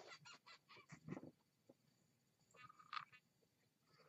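Faint handling noise: a run of soft clicks and knocks, then a brief squeak about three seconds in, as the camera is moved in toward the jar.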